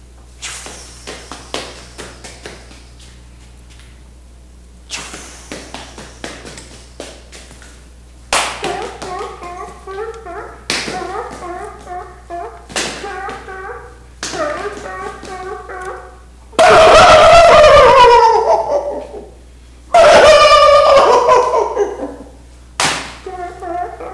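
A man imitating animal sounds with his mouth and voice: runs of rapid clicks in the first several seconds, then choppy, yelping calls. About two-thirds of the way through come two very loud cries that drop in pitch.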